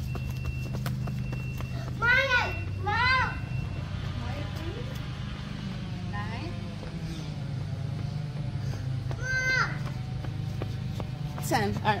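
A young child's high-pitched squeals or shouts during play: two short calls about two seconds in, then two more near the end, over a steady low drone.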